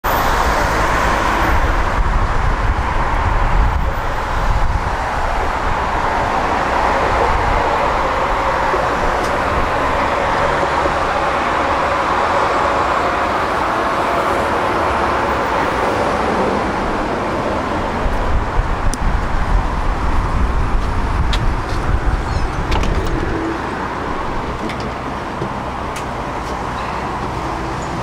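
Road traffic passing a tram stop, with a tram pulling in and stopping about halfway through; a faint steady tone sits under the traffic noise in the middle. A few short clicks follow in the second half.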